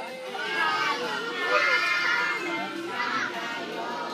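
Many young children's voices chattering and calling out at once, with adult talk mixed in.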